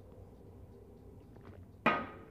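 A glass bottle set down on a hard surface: a single sharp clink with a short ringing tail near the end, after faint room tone.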